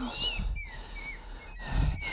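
A run of short, high whistle-like chirps, most of them falling in pitch, about five in two seconds, with a low murmur rising near the end.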